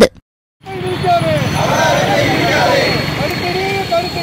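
A brief silent gap, then roadside ambience: several people's voices overlapping over a steady traffic rumble.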